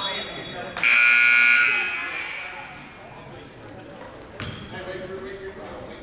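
A basketball game's stoppage signal sounds once, about a second in: a loud, steady, shrill tone lasting about a second that rings out in the gym. A single knock follows a few seconds later.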